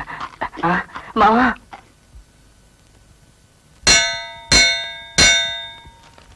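A metal bell struck three times, about two-thirds of a second apart, each strike ringing and fading, after a brief voice at the start.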